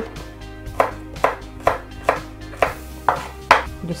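Chef's knife chopping celery stalks on a wooden cutting board: about seven crisp strokes, roughly two a second, over background music.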